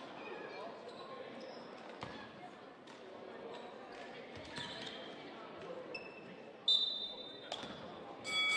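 Basketball game court sound in a large, echoing hall: a ball dribbling on the hardwood, short sneaker squeaks and scattered voices from players and the crowd. About two-thirds of the way in comes one sharp, louder squeak or impact.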